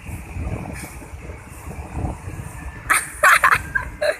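Wind noise on the microphone over surf washing onto the beach, with a few sharp, loud bursts about three seconds in.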